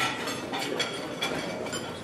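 Dining-room clatter: scattered light clinks of cutlery and dishes over steady background room noise.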